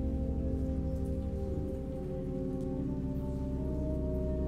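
Church organ playing sustained chords, changing chord about one and a half seconds in.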